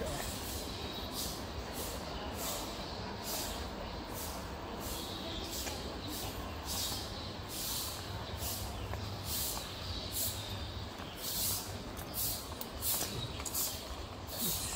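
Footsteps of a person walking on a brick-paved sidewalk, short scuffs at about two a second that get louder toward the end, over a steady low rumble.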